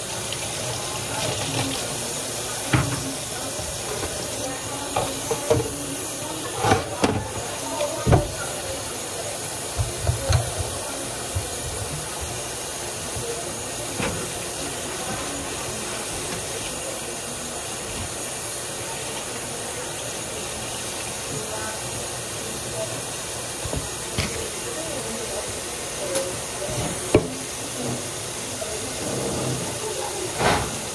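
Kitchen tap running steadily into a sink, a continuous hiss, with scattered knocks and clatter of items being handled.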